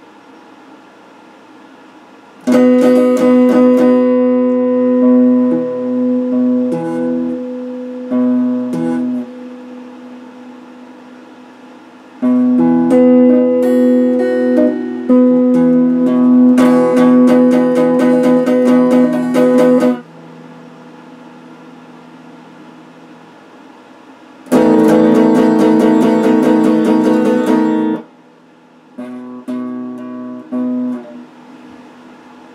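Electric guitar played in phrases of sustained chords and single notes, separated by pauses of a few seconds. The first phrase starts a few seconds in and fades away, a second longer phrase follows, then a short loud strummed burst and a few brief notes near the end.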